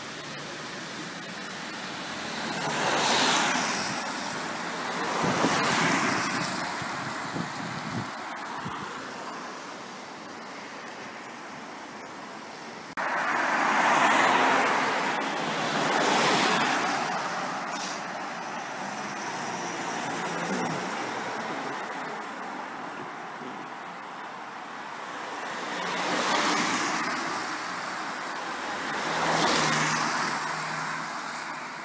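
Cars driving past one after another on a wet road, each one's tyre hiss and engine swelling up and fading away, about six passes in all.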